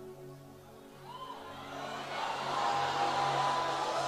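Soft sustained church keyboard chords under a congregation's laughter and murmur, which swells from about a second and a half in.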